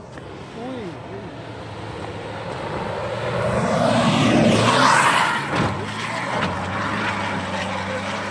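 Rally 4x4 racing past on a dirt track at full throttle: the engine grows louder as it approaches, passes closest about five seconds in with a drop in pitch, then carries on at a steady lower level.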